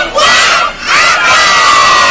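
A big group of young children shouting together in a cheer: a short loud shout, then a second, longer one held from about a second in.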